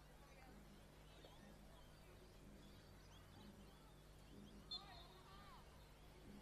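Near silence: faint open-air ambience with a low steady hum and distant voices, one of them a little louder about five seconds in.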